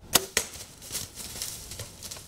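Compound bow shot from full draw: a sharp snap, a second sharp crack about a quarter second later, then a patter of lighter clicks fading out.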